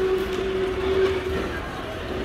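Busy indoor background noise with a low rumble and a single steady hum-like tone that stops about one and a half seconds in.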